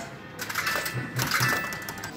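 Fruit machine sounds: a run of sharp clicks and clatter with short electronic tones.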